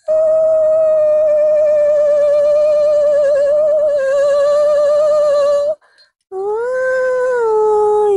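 A woman's voice singing long, unaccompanied notes with vibrato. One high note is held for nearly six seconds, then after a brief break a new note rises and steps back down.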